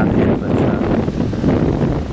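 Strong wind buffeting the camera's microphone: a loud, steady low rumble.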